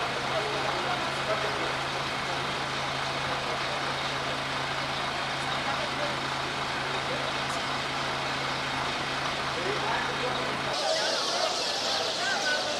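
Fire truck engine running with a steady low hum, with faint voices in the background. About a second before the end the hum cuts off abruptly and crowd chatter takes over.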